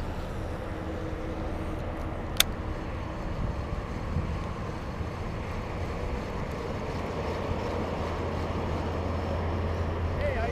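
Steady hum of distant highway traffic, with one sharp click about two and a half seconds in.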